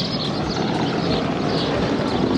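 Road traffic: a vehicle running past on the road, a steady rumble with no break.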